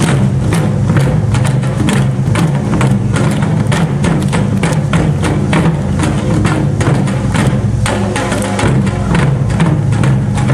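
Korean traditional drum ensemble playing a fast, dense, continuous rhythm: a large hanging buk barrel drum and a janggu hourglass drum struck with sticks, along with drums on stands.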